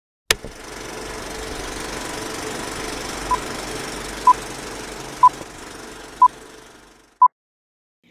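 Film projector switched on with a click, then running with a rattling whir that slowly fades out. Over it come five short beeps at one pitch, about a second apart, the last one louder, like a film-leader countdown.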